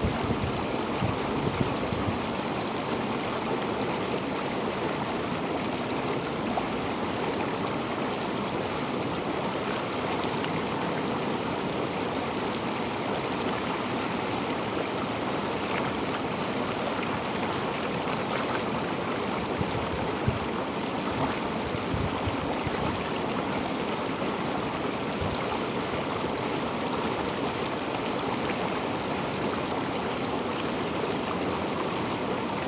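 Inflatable hot tub's air-bubble system running: a steady, even rush of bubbling, churning water, with a few faint splashes.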